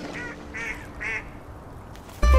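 Three short bird calls in quick succession, the first faint and the last two louder.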